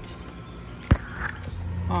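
A single sharp click about a second in, over quiet background noise, followed by a steady low hum that comes in about half a second later.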